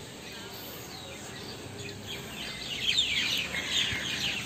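Birds chirping: a faint outdoor background hush at first, then a run of quick falling chirps from about halfway through that gets louder toward the end.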